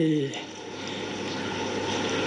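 A man's voice at a microphone finishes a word, then pauses. Under the pause is a steady, even drone of engine-like background noise.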